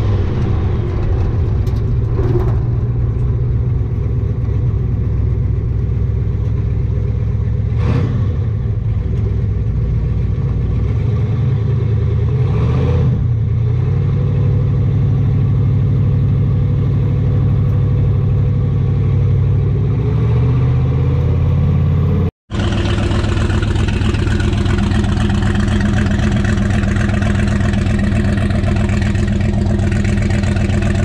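Twin-turbo big-block Chevy V8 in a square-body C10 running steadily at low revs, heard from inside the cab. After a brief dropout about two-thirds of the way through, the same engine is heard idling from outside the truck, with a brighter, rougher sound.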